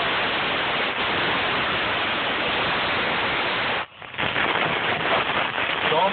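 Propane torch flame hissing steadily as it cuts through the truck's steel bumper, throwing sparks. The hiss drops out briefly about four seconds in, then resumes.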